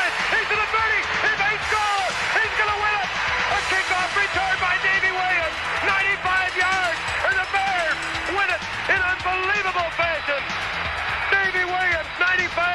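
Loud, excited shouting and cheering from several high-pitched voices overlapping, with music underneath, as a game-winning touchdown is celebrated.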